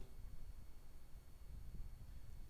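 Quiet room tone with a faint low rumble; no speech.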